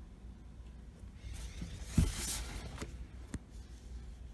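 Cardboard box being handled and turned over: a scraping rustle with a thump about halfway through, then a single sharp click a second later.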